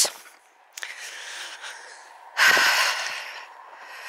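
A person breathing close to the microphone: a quieter breath in from about a second in, then a louder, breathy exhale like a sigh about two and a half seconds in.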